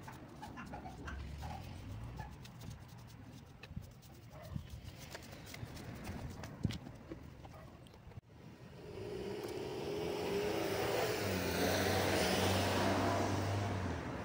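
A motor vehicle passing on the street, swelling in over a couple of seconds in the second half and holding loud until near the end. Before it there are only faint scattered clicks.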